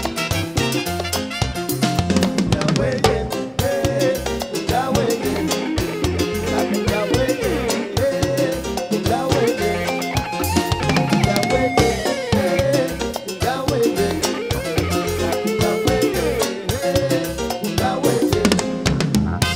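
Live cumbia band playing an instrumental passage over a steady dance beat, with drum kit, congas, bass, electric guitar and horns.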